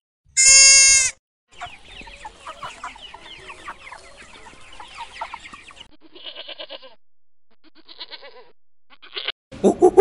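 A single short, loud, high bleat from a wild sheep. It is followed by several seconds of faint, busy clucking and a few quieter short calls near the end.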